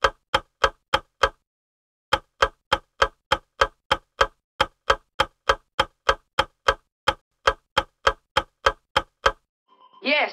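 Countdown-timer sound effect ticking like a clock, about three sharp ticks a second. The ticks break off for under a second near the start, resume, and stop shortly before the end.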